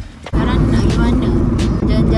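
Steady road and engine rumble inside a moving car's cabin, cutting in abruptly about a third of a second in.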